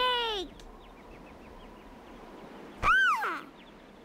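Two short wordless vocal cries. The first, at the very start, falls in pitch; the second, about three seconds in, rises and then falls.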